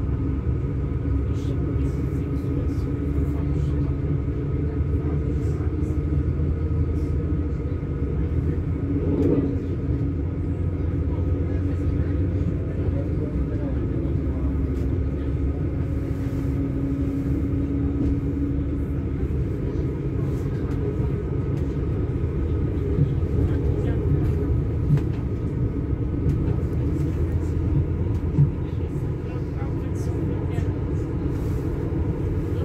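Regional train running at speed, heard from inside the passenger cabin: a steady low rumble from the wheels and running gear, with a faint steady hum from the drive and occasional light clicks.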